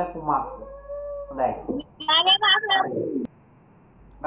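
A young child's high-pitched voice speaking in short phrases with brief pauses, falling quiet a little after three seconds in.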